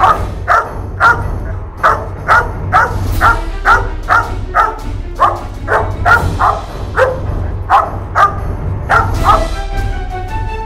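Young German Shepherd barking in a steady run of sharp barks, about two a second, as it lunges on its tether at a handler's bite pillow: excited barking in drive during protection training.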